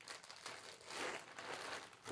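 Clear plastic bag crinkling faintly as it is handled, with a few soft rustles.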